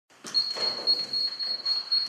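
A steady high-pitched whine, with faint irregular rustling and a few soft knocks beneath it.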